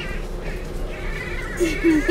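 Baboons calling with high-pitched squeals and short yelps, getting louder near the end.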